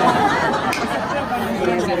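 A group of women's voices talking and chattering over one another, with a sung note trailing off at the start.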